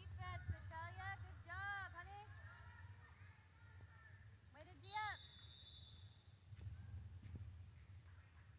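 Basketball shoes squeaking on a hardwood gym floor: a quick run of short squeals over the first two seconds, then another few squeals about five seconds in, all fairly faint over a low gym hum.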